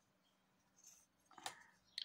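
Near silence, with a few faint clicks and rustles in the second half from hands handling a crochet hook and cotton yarn.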